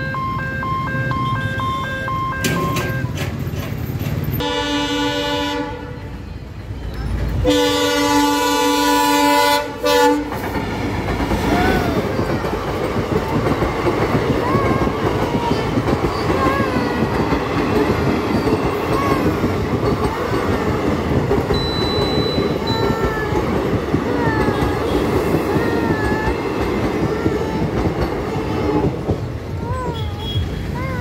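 Indian Railways passenger train: a pulsing electronic beep stops about three seconds in, then the locomotive horn sounds twice, a short blast and a longer, louder one. The coaches then pass with a continuous rumble and clatter of wheels on the rails.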